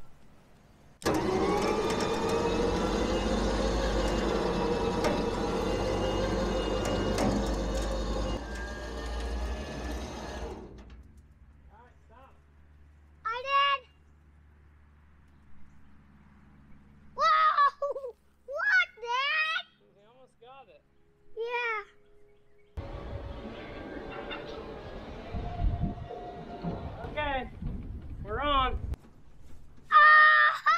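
Electric trailer winch motor running under load as it drags a pickup onto the trailer, for about ten seconds before stopping, then starting again about 23 seconds in.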